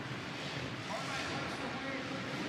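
Supercross dirt bikes running on a stadium track, heard as a steady noisy wash, with a faint voice briefly about a second in.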